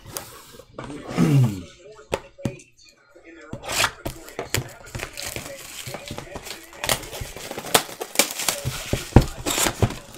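Plastic shrink wrap being torn and crinkled off a Panini Prizm basketball hobby box as the box is opened. From about three and a half seconds in there is a busy run of crinkling with sharp cardboard clicks and taps.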